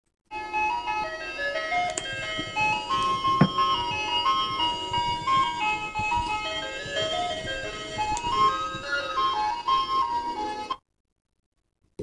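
An ice-cream-truck-style electronic jingle playing a simple stepping melody for about ten seconds, then cutting off suddenly, with about a second of silence before the end.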